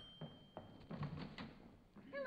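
Faint studio sound effect of a door being opened: a handful of light clicks and knocks spread over about a second and a half.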